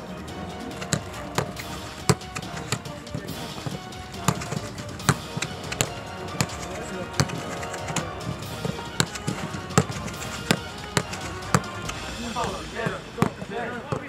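Footballs being kicked on a training pitch: sharp, irregular thuds about one or two a second over a steady background.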